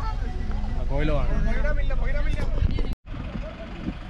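Steady low rumble of a moving bus, heard from on board, with voices over it; the sound cuts off abruptly about three seconds in and continues quieter.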